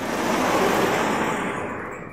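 Vertically sliding lecture-hall chalkboard panels being pulled down along their tracks: a rolling rumble that swells and fades over about two seconds.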